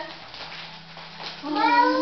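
A single drawn-out meow, about half a second long, near the end.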